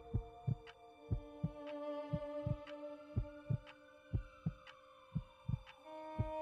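Soundtrack heartbeat effect: a slow double thump about once a second over a steady eerie drone, with a faint tone that slowly rises and then falls.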